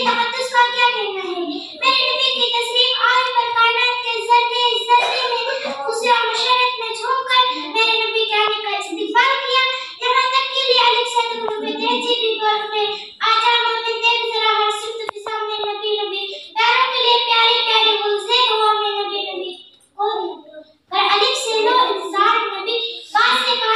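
A young girl's voice through a microphone, reciting in a sung, drawn-out style with long held notes and short pauses between phrases. There is a brief pause about twenty seconds in.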